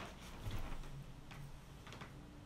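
A few faint, irregularly spaced clicks and soft movement noises in a quiet room.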